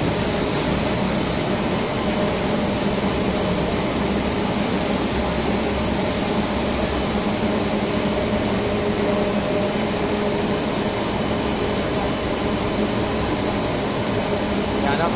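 Steady machine hum of a running electro-galvanized wire production line, with faint steady tones over an even noise.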